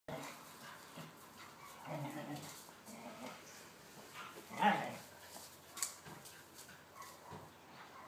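Two whippets play-fighting, making faint dog noises throughout, with one short, louder dog cry about halfway through.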